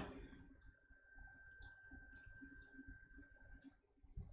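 Near silence: room tone with a few faint, short clicks and a faint steady high tone.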